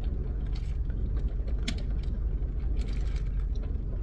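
Steady low hum of a car cabin, heard from inside the parked car, with a few faint clicks over it.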